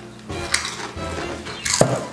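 Stacked potato crisps being bitten and chewed, with two sharp crunches, about half a second in and near the end, over background music.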